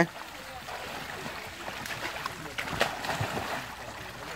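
Garden hose spraying a steady stream of water into a small plastic paddling basin filled with water, a continuous even splashing hiss.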